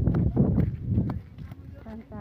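Indistinct voices talking, mixed with rustling and knocking from the handheld phone being moved. The sound is louder for the first second, then drops away.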